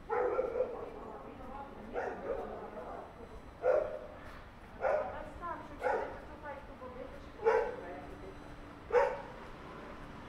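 A dog barking repeatedly, about seven separate barks spaced a second or so apart.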